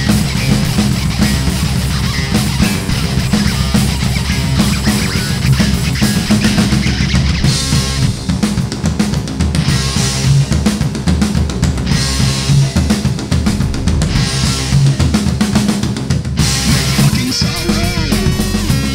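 Nu/industrial metal song with a hard-hitting drum kit, bass drum and snare driving under guitars, steady and loud. The texture changes about 16 seconds in.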